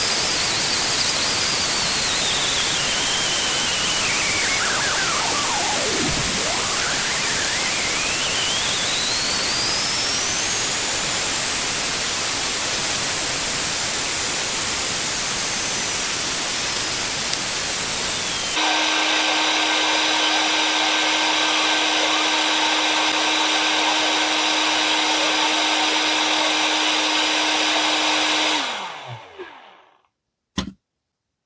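Parkside PALP 20 A1 cordless air pump running with a steady rush of air. About two-thirds of the way through, the sound changes to a lower, steadier hum with a single low tone as the motor slows on a nearly empty 4 Ah battery. Near the end it winds down and cuts out as the battery runs flat.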